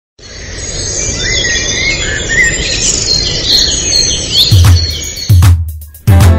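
Birds chirping over a steady outdoor ambience bed, opening a Tigrigna song; near the end two deep drum hits with a falling pitch sound as the music comes in.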